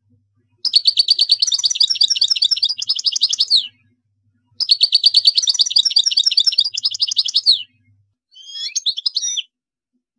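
European goldfinch singing: two long phrases of rapid, high, repeated notes, each about three seconds and each ending in a falling slur, with a short pause between them, then a brief broken phrase near the end.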